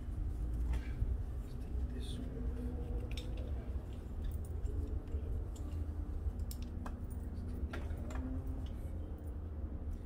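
Dog harness being unbuckled and slipped off a puppy: scattered light clicks and rustles of the buckle and straps, over a steady low rumble and a faint hum.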